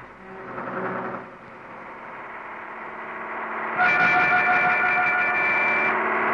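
A bus approaching, its engine noise building, then a loud steady horn sounding suddenly about four seconds in and held for about two seconds.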